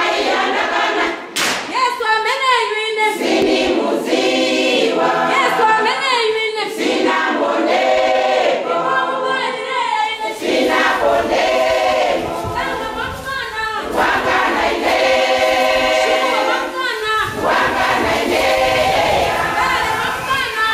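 A choir singing in harmony in long phrases as background music, with low thuds coming in about halfway through.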